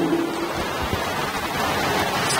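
Steady, even hiss of background noise, with the tail of a man's drawn-out word ending about half a second in.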